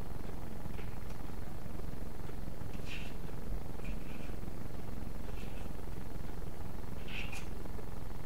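Steady low background hum, with a few faint, brief clicks of eggshell halves as an egg is separated by hand.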